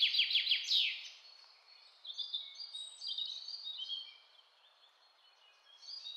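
Faint bird chirps: scattered short, high calls between about two and four seconds in.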